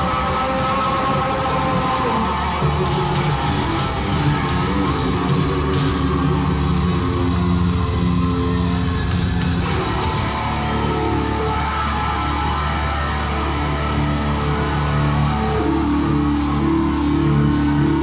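Live rock band playing: electric guitars holding sustained chords over bass and a drum kit, with cymbal hits through the first few seconds and again near the end.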